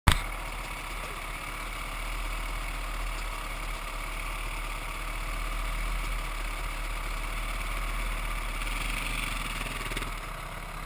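Dirt bike engine idling steadily, with a short sharp knock right at the start. A second motorcycle engine grows louder near the end as it comes up close.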